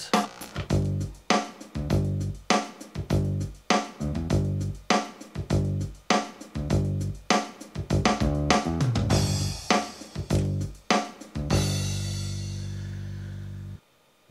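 Kawai ES8 digital piano with its rhythm-section drum and bass accompaniment, played through a pair of IK Multimedia iLoud Micro Monitors: rhythmic keyboard chords over bass and drums, ending on a long held chord that is cut off abruptly near the end.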